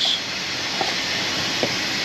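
A steady hiss of workshop background noise, with a couple of faint light taps as a cartridge oil filter is handled out of its box and into its plastic housing.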